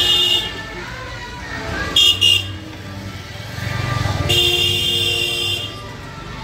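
Vehicle horns honking in street traffic: a short honk at the start, two quick toots about two seconds in, and a longer honk held for over a second near the end. A low traffic rumble runs underneath.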